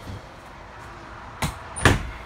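Two sharp knocks about half a second apart near the end, the second louder, with a brief high squeak just before it.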